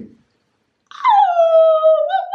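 A woman's voice holding one long, high celebratory 'oooh', sliding down at first and then held steady, starting about a second in. A short sharp click comes right at the start.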